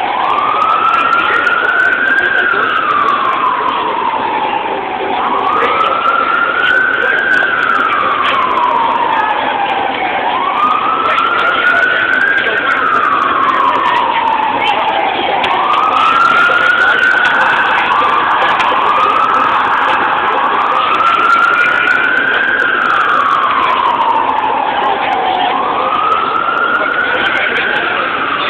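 Emergency-vehicle siren wailing: each cycle rises quickly and falls away slowly, repeating about every five seconds, with a short run of quicker warbles about two-thirds of the way through.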